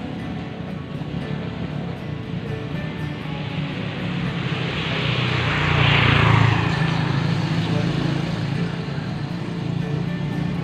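Background music with a motor vehicle passing by: its noise builds, is loudest about six seconds in, then falls in pitch and fades away.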